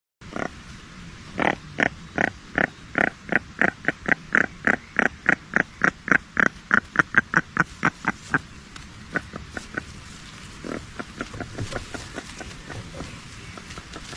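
Scaly-sided merganser hen giving a rapid series of short, harsh calls, about three to four a second, the calls closing up slightly before they stop about eight seconds in. After that come fainter, scattered calls.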